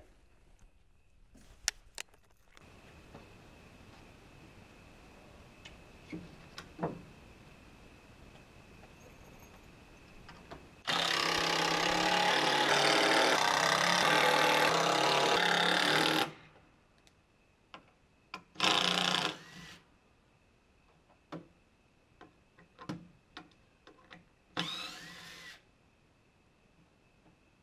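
Cordless drill driving screws through a plywood triangle gusset into a wooden post. It runs in one long steady stretch of about five seconds, then gives two short bursts, with light clicks and knocks in between.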